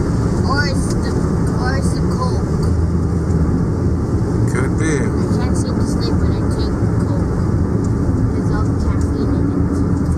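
Steady drone of a car's engine and tyres on a wet road, heard from inside the cabin.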